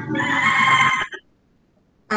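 A person's voice coming through a video-call line, cut off abruptly a little over a second in and followed by dead silence as the audio drops out.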